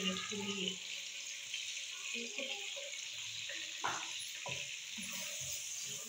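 Chopped onions sizzling steadily in hot oil in a nonstick kadai, frying on low heat toward a light golden colour. A wooden spatula stirs them, and a couple of short knocks of the spatula against the pan come about four seconds in.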